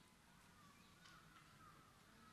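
Near silence: faint room tone with a faint, wavering high-pitched tone.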